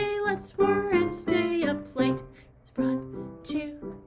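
Digital piano playing a simple beginner melody, one note after another at about two notes a second.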